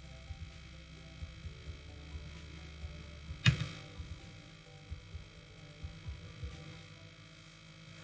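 Quiet royalty-free background music over a low hum, with scattered soft low thumps and one sharp knock about three and a half seconds in.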